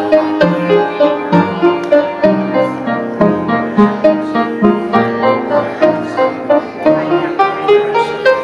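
Instrumental postlude played on piano, notes struck at an even, quick pace.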